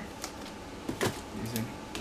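A few light knocks as a plastic box is set down inside a cardboard carton, with a short hum of a voice about midway.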